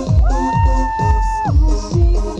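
Live dance-pop music over a concert sound system: a steady kick drum about twice a second under a long held high note that ends about a second and a half in.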